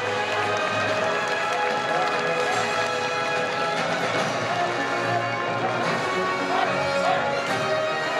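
Military band music playing at a steady level, with held chords throughout, and crowd voices faintly underneath.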